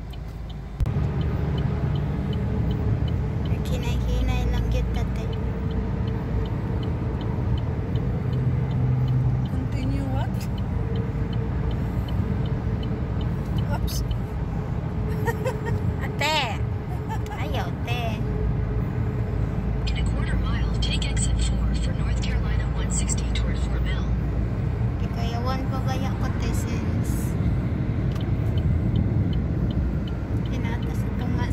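Low road and engine rumble heard inside a car cruising at highway speed. It gets suddenly louder about a second in.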